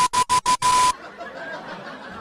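Edited-in TV static and colour-bar test-tone beep: a loud hiss with a steady high beep, stuttering in about five quick chops over the first second. It cuts off to a much quieter background hiss.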